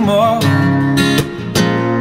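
Acoustic guitar strummed in a steady rhythm, a stroke about every half second, with a man's sung note wavering and fading out at the start.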